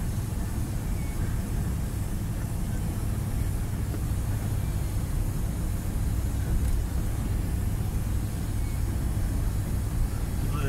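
Steady engine and road noise inside a diesel lorry's cab, cruising at motorway speed: an even low rumble with no change.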